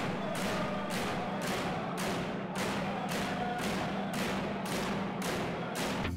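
Inuit frame drums (qilaut) beaten in a steady rhythm, about two strokes a second, with a steady low tone sounding underneath.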